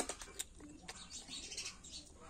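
Fingers cracking and peeling the thin, brittle skins of small red wild fruits: a few sharp clicks, the loudest at the start and another about half a second in. Faint bird calls are heard alongside.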